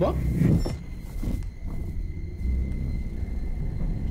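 A low, steady rumbling drone with a faint, thin high tone held above it, typical of horror-trailer sound design. A woman's last words are heard at the very start.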